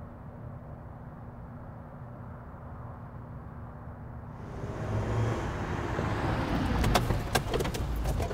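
A car drives up close, its engine and tyre noise building from about halfway through and loudest near the end, with a few sharp clicks in the last second. Before that there is only a low, steady rumble.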